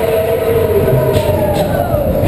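Matterhorn Bobsleds coaster car running fast along its tubular steel track: a loud, steady rumble with a drawn-out squeal that slowly falls in pitch.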